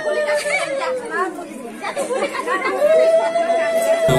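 Crowd of people talking over one another. A long steady tone is held in the background, breaks off about a second in and comes back near the end.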